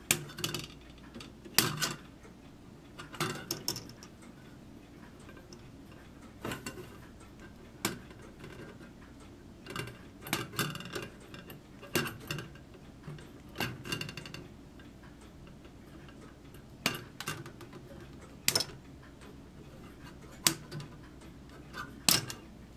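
Sprue nippers snipping plastic model parts off a kit sprue: sharp, irregular clicks, a dozen or more scattered throughout, some coming in quick clusters.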